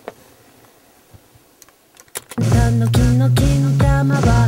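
A few soft clicks over near-quiet room tone, then about two and a half seconds in, playback of a music track starts loudly: a pitched instrument line in short notes over a low drum beat.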